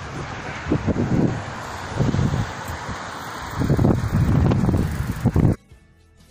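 Wind buffeting a phone microphone outdoors by a road, a steady rush broken by three heavy gusts. It cuts off suddenly about five and a half seconds in.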